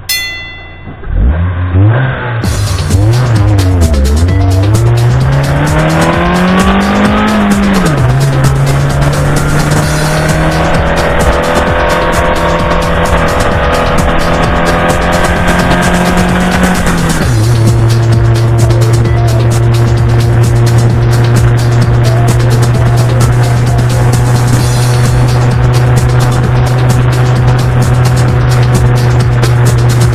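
Subaru R2's small four-cylinder engine pulling away and picking up speed. The revs climb unevenly, drop sharply about eight seconds in, and drop again about seventeen seconds in. The engine then holds a steady drone while cruising.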